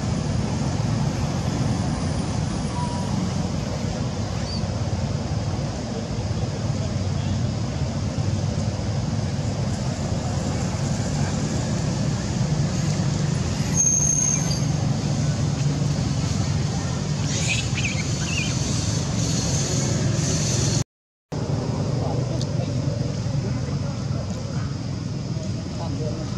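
Steady outdoor background noise, a continuous low rumble, with a few faint high chirps in the middle. The sound cuts out for a moment near the end.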